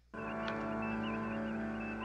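Electronic starship-bridge ambience from a TV sci-fi episode: a steady drone of several held pitches with a small warbling beep repeating about four times a second. It cuts in suddenly just after the start.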